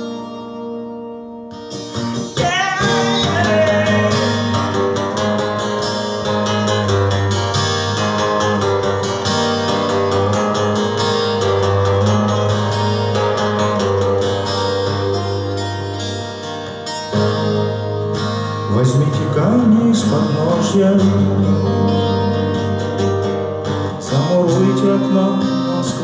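Twelve-string acoustic-electric guitar played through the PA in an instrumental passage of a song, chords strummed and picked, with a voice joining briefly in places.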